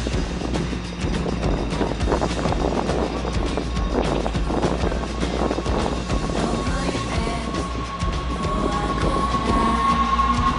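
NS Sprinter Lighttrain electric multiple unit running into the platform and past close by, its wheels clicking over the rails, with a thin steady whine that sets in about four seconds in and grows louder toward the end. Music plays over the train sound.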